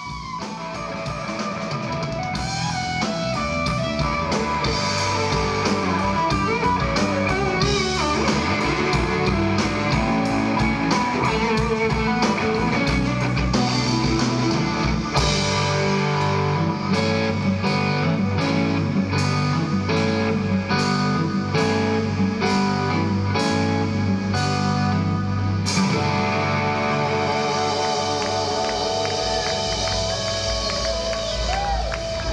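Live instrumental rock trio: lead electric guitar over bass guitar and drum kit, fading in over the first few seconds. In the second half the drums hit a run of evenly spaced sharp accents.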